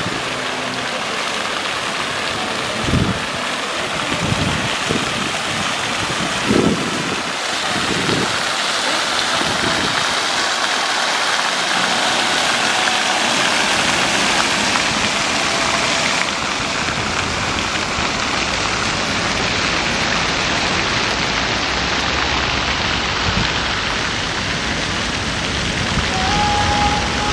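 Plaza fountain jets splashing into their basin: a steady rushing hiss of falling water, with a few low thumps in the first eight seconds or so.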